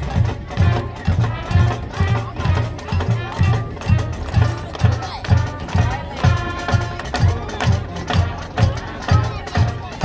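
Marching band playing: brass over a steady bass-drum beat of about two beats a second.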